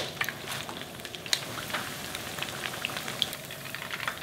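Battered chicken pieces deep-frying in hot oil during their second fry: the oil sizzles steadily with many small scattered pops.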